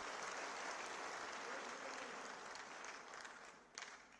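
Audience applauding, a steady patter of many hands that dies away near the end with one last clap.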